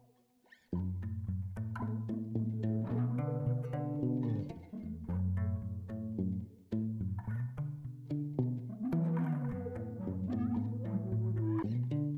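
Background music that starts about a second in and runs steadily, briefly dipping in the middle.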